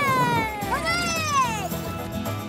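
Cartoon background music with swooping, pitched sliding sounds over it: a long falling glide, then a rising-and-falling arc about a second in.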